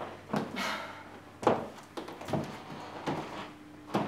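About five soft, short knocks and thumps, spread a half-second to a second apart, over a faint steady hum.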